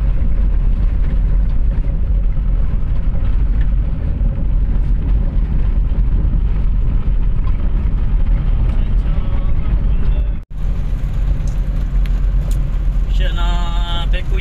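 Steady low rumble of a car's engine and tyres heard from inside the cabin while driving. It drops out for an instant a little after ten seconds in, then carries on, and a voice comes in near the end.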